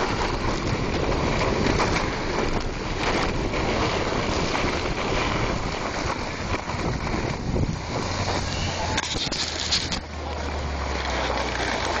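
Wind rushing and buffeting over the microphone of a handheld camera carried by a skier going fast downhill, with a brief harsher hiss about nine seconds in.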